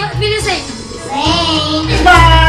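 A child singing into a microphone over loud backing music with a heavy bass; the bass drops out briefly in the middle.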